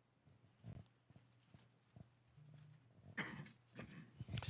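Near silence: room tone with a faint low hum and a few faint clicks, and a short noise about three seconds in.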